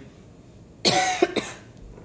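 A person coughing: one strong cough about a second in, followed quickly by two short ones.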